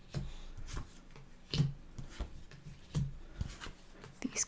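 Tarot cards being dealt out onto a wooden table: several soft taps and slides as each card is laid down.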